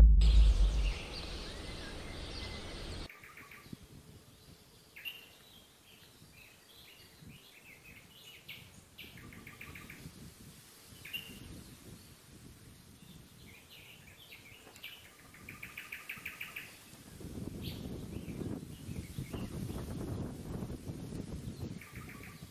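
A deep boom from a logo sound effect fades out in the first second, and then birds call in rapid runs of short, high chirps. Low rustling comes in near the end.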